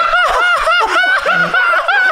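Two men laughing hard together, high-pitched, in quick repeated pulses.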